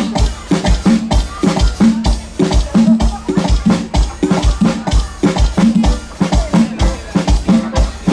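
Live norteño band playing a dance tune: accordion and guitar over a drum kit keeping a steady, quick beat.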